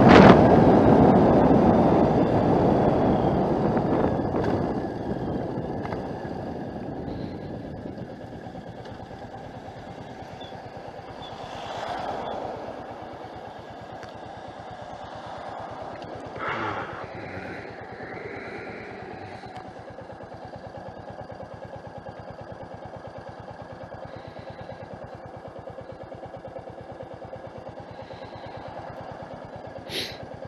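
Motorcycle slowing down, its engine and riding noise fading away over several seconds, then the engine idling steadily while the bike waits at a red light. Two brief louder noises come in around the middle.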